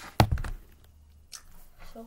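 A single loud thunk about a fifth of a second in, dying away within half a second: something set down on a hard surface. A faint click follows near the end.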